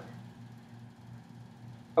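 Quiet room tone with a faint steady low hum, in a pause between spoken phrases.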